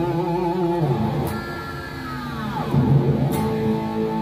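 EVH Wolfgang Standard electric guitar played through studio monitor speakers: ringing chords at first, then a high note about a second in that slides down in pitch, and a loud new chord struck near three seconds in.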